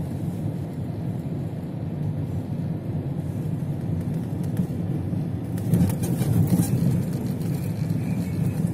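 A car driving on a snowy road, heard from inside the cabin: steady engine and tyre rumble, with a few light clicks or rattles in the second half.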